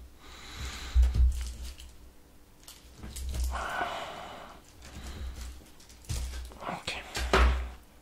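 A kitchen knife cutting through burgers on their paper wrappers, with several dull thumps as the blade goes through to the table and paper wrappers crinkling in between.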